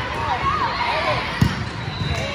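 A volleyball smacks once, sharply, about one and a half seconds in, over echoing voices and shouts from players and spectators.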